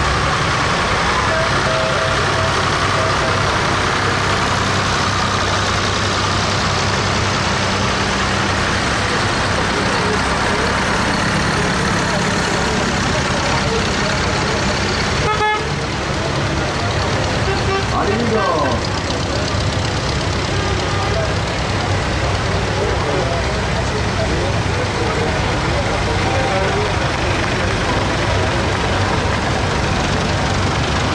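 Engines of vintage farm tractors running at a slow parade pace as they pass close by, a steady low drone under crowd chatter.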